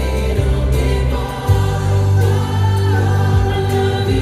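Boy band singing a pop ballad live, several voices in harmony over a bass-heavy backing, the bass moving to a new note about one and a half seconds in.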